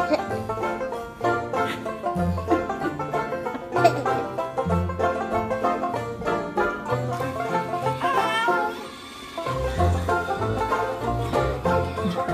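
Background music: a quick plucked-string tune in a bluegrass style over a bass line, briefly dropping away about three quarters of the way through.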